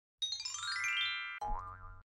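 Short cartoon logo sting: a quick rising run of bright chiming notes, then a springy boing whose pitch wobbles upward, cutting off suddenly.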